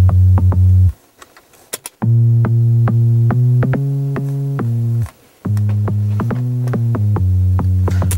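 Synthesizer playing a line of long held notes, MIDI extracted from a vocal track in Cubase 6, over a drum-machine beat. The playback drops out for about a second, about a second in, and again briefly about five seconds in.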